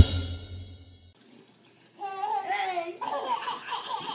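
The last hit of the intro music dies away within about a second. After a short gap, a baby lets out a high-pitched squeal lasting about a second, then laughs in short bursts.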